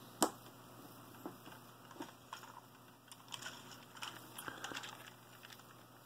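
Faint scattered clicks and taps of a plastic LEGO brick tank model being handled and turned by hand, with one sharper click about a quarter second in.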